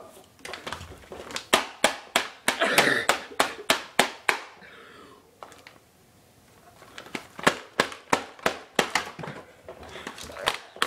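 A quick series of sharp taps and knocks, about three a second, in two runs with a quieter gap in the middle.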